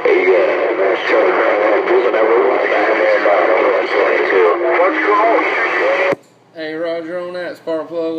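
Galaxy CB radio receiving a garbled, noisy voice transmission that the ear can barely make out. About six seconds in it cuts off with a click as the station unkeys, and after a short gap a clearer voice from another station comes on.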